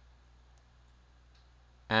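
A couple of faint computer mouse clicks over a steady low electrical hum, with a man's voice starting near the end.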